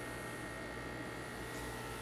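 Steady low hum and hiss of a running nano reef aquarium's pump and equipment, with a faint steady tone.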